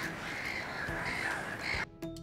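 Greylag geese honking continuously in harsh, wavering calls, cut off suddenly near the end.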